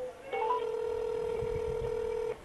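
Telephone ringback tone heard over the phone line: a few quick rising beeps, then one steady ring tone lasting about two seconds, the sign that the dialled number is ringing at the other end.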